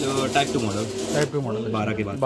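Men's voices talking, with no other clear sound.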